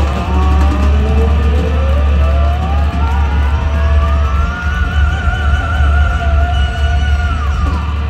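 Hard rock band playing live, with drums, bass and electric guitar. Over it a single high note slides upward for about three seconds, is held with vibrato, then drops away near the end.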